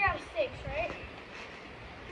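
A person's high-pitched voice calling out briefly in the first second, with a few soft low thumps underneath.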